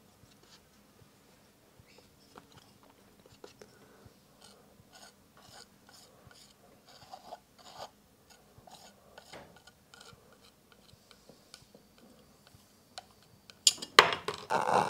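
Metal palette knife scraping and tapping through oil paint on a palette, then dragging across a canvas panel: soft, irregular scrapes and ticks. A louder sound breaks in right at the end.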